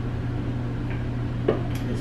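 Steady low hum with a single short knock about one and a half seconds in.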